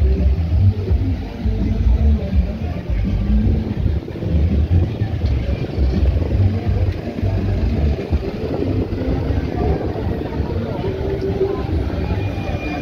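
Busy roadside street noise: cars passing close by, with music and people's voices mixed in and a heavy, uneven low rumble.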